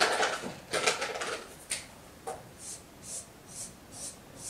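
Marker drawing on a whiteboard: a regular run of short, high swishes about two a second as vertical strokes are drawn, after some louder scuffing and handling noise in the first second and a half.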